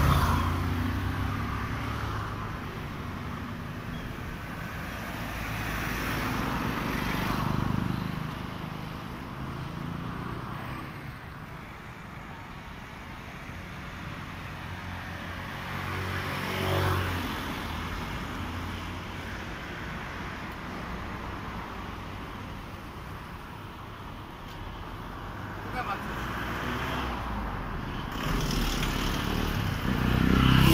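Street traffic: vehicles pass by at intervals, swelling and fading over a steady low rumble, with indistinct voices.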